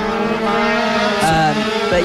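Engines of a pack of racing minibikes held at high revs, a steady many-toned note as the group runs through a bend close together.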